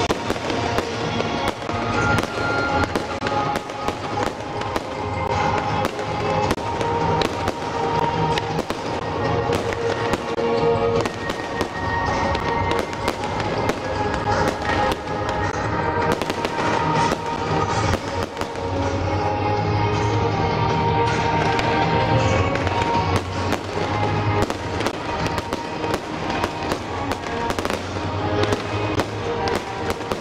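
Fireworks display: aerial shells launching and bursting one after another in a constant run of bangs and crackles, coming thicker toward the end, with music playing underneath.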